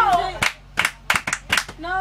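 A group clapping hands at about three claps a second, with voices calling out over the claps, one falling shout at the start and another near the end.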